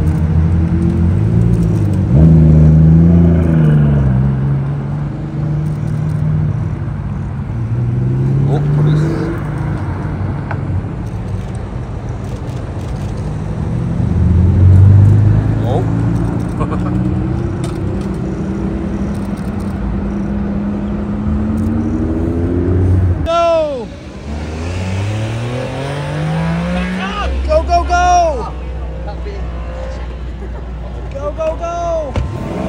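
Several supercar engines revving and accelerating away one after another, their pitch climbing and falling through gear changes, loudest a couple of seconds in and again midway. Near the end one car pulls away hard, its note rising steadily through a gear.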